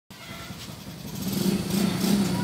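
A steady low engine hum that grows louder about a second in.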